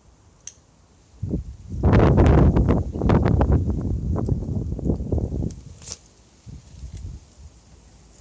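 Rustling and crackling of foliage close to the microphone, loudest from about two to five seconds in, with a low rumble beneath.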